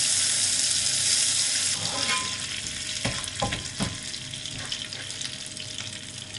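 Butter sizzling as it melts into hot caramelized sugar in a non-stick frying pan. It is stirred with a slotted plastic spatula, with a few light knocks and scrapes on the pan around the middle, and the sizzle gradually dies down.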